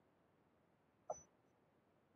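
Near silence, broken once about a second in by a single brief, sharp sound that dies away almost at once.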